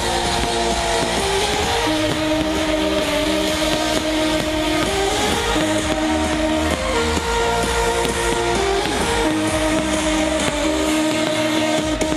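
Electronic dance music played loud over a festival sound system, heard from within the crowd: sustained synth chords that shift every second or two over a heavy bass line, the bass dropping out briefly near the end.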